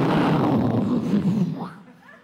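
A man's vocal imitation of an airliner engine blowing up, a loud, rough noise made into a microphone cupped in both hands. It cuts in suddenly and fades out after about a second and a half.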